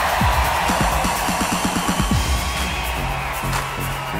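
Live electronic dance-music intro played by a band with an orchestra. It opens with a run of low drum hits that each fall in pitch and speed up into a roll, then a held bass line about three seconds in, over a steady wash of crowd cheering.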